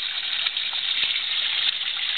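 Water from a homemade pond biofilter's return hoses pouring steadily into the pond surface, a continuous splashing gush. The streams fall about a foot and a half before they hit the water, which aerates the pond.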